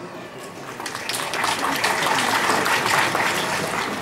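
Crowd applauding, a dense patter of handclaps that builds up about half a second in and holds steady.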